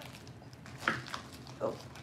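Plastic candy blister packaging being handled and pulled at by hand, giving a few soft crackles.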